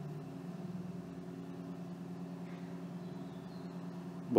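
A steady low hum or drone of several held tones, unchanging throughout.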